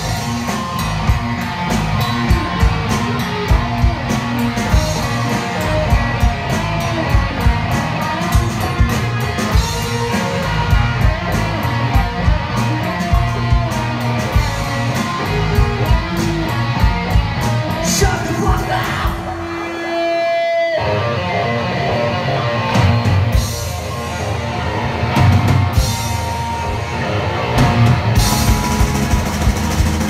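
Live punk rock band playing: electric guitars, bass guitar and drum kit at full volume. About twenty seconds in, the drums and bass drop out for a moment before the whole band comes back in.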